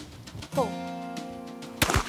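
A single shotgun shot near the end, the loudest sound, fired at a clay target just after a call of "pull". Under it a sustained chord of music is held from about half a second in.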